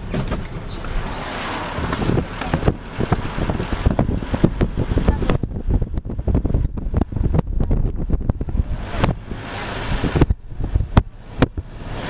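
Wind buffeting the microphone and road rumble from a car driving slowly, with many irregular knocks and crackles.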